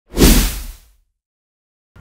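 Whoosh sound effect with a deep low boom beneath it for a news logo sting: it swells in sharply just after the start and fades out within about a second.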